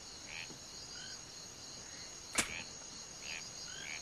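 Rural outdoor ambience bed of an audio drama: steady high cricket chirring with short chirps scattered through it, and one sharp click a little over two seconds in.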